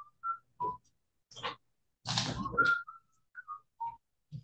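A string of short, high whistled chirps, each a fraction of a second long, broken by breathy rushes of noise, the loudest about two seconds in, heard over a video-call line.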